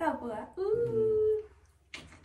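A person's voice: a short vocal sound, then one held, humming 'mmm' of about a second, as if weighing a rating. A sharp click comes near the end.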